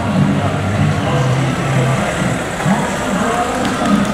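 Busy town-centre street noise: a car engine running close by amid the chatter of a crowd.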